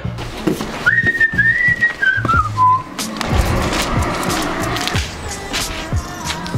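Someone whistling a single high note that wavers and then slides down, with background music under it; after the whistle comes a run of short knocks and clatter.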